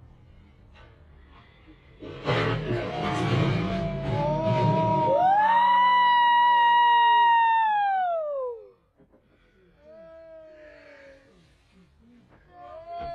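A wrestler's leap from a stepladder crashes a folding table under his opponent about two seconds in: one loud crash with a rattling noisy tail. It is followed by long, loud, high-pitched screams that fall in pitch, and a shorter falling cry near the end.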